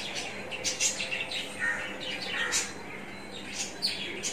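Small birds chirping: a run of short, high chirps, with a few quick falling calls around the middle.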